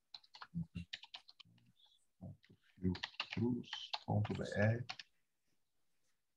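Typing on a computer keyboard, a quick run of key clicks, followed in the second half by an indistinct voice that is louder than the typing.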